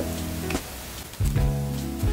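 Background music: soft sustained chords over a low bass, with a new chord coming in just past halfway.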